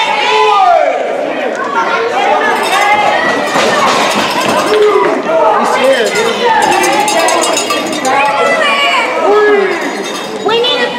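A small crowd of spectators shouting and yelling, many overlapping voices rising and falling in pitch.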